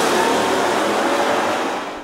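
A police Land Rover driving off at speed: a steady rush of engine and tyre noise that fades as it pulls away.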